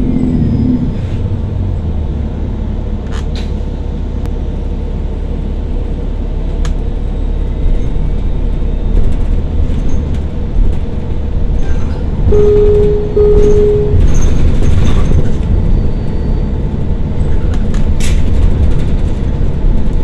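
Cabin noise of a 2013 New Flyer XDE40 diesel-electric hybrid bus (Cummins ISB6.7 engine with BAE Systems HybriDrive) under way: a steady low drivetrain and road rumble with scattered clicks and rattles, growing louder about eight seconds in. A little past halfway come two short beeps in quick succession.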